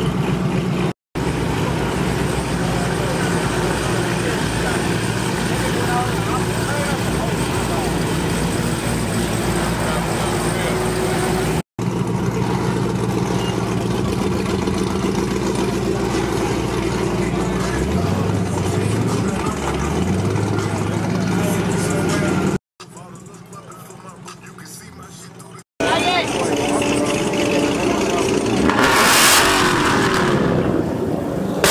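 Car engines idling and rolling by, with voices in the background, across several short cuts. An engine revs up a couple of times about two-thirds through. Near the end a Ford Mustang held on a two-step launch limiter gives a loud, crackling burst from its exhaust.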